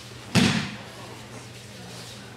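A single loud thud about a third of a second in, dying away quickly: an aikido breakfall, a body landing on the tatami mat.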